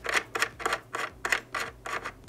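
Small plastic adjustment wheel on the side of a projector being turned by hand, clicking evenly about three times a second.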